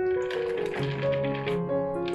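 Background music, with a light clatter of many small soap cubes tumbling out of a bowl into soap batter.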